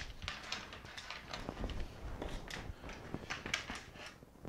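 Handling noise: scattered light taps and rustles, with a faint low rumble underneath, as the extended steel tape blades and the handheld camera are moved over a workbench.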